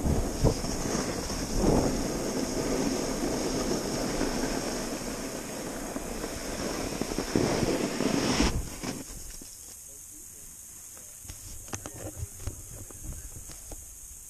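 A snowboard sliding through snow, with wind rushing over the camera's microphone: a loud, steady rush that cuts off suddenly about eight and a half seconds in as the board stops. After that it is much quieter, with a few soft crunches in the snow.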